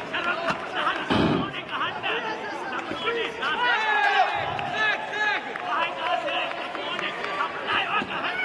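Coaches and spectators calling out in a large hall, many voices overlapping, with a dull thud about a second in and a weaker thump just after the middle from taekwondo kicks striking a body protector.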